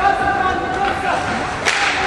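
Ice hockey play in an indoor rink: one sharp crack of stick and puck about three-quarters of the way in, under a long held shout from a voice in the rink.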